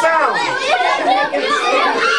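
A roomful of children calling out and shouting all at once, many high voices overlapping.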